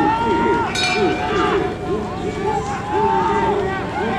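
Several spectators shouting and cheering for runners at the finish of a track race, voices overlapping, with long drawn-out yells. There is one sharp high-pitched cry just under a second in.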